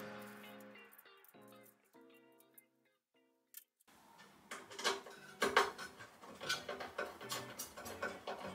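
Background music fading out over the first couple of seconds. After a brief pause, irregular clicks and knocks of small parts being handled and fitted as a fibre laser's column is assembled by hand.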